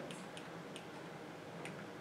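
About four faint, sharp clicks at uneven intervals over quiet room tone.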